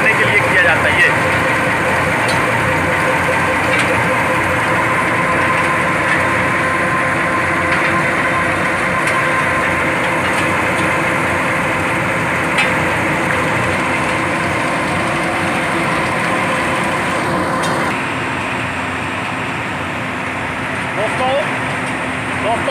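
Drum-mix hot bitumen plant running: the rotating aggregate dryer drum, driven by V-belts and pulleys, with its burner firing inside, gives a steady mechanical noise with a steady hum. The noise eases a little near the end.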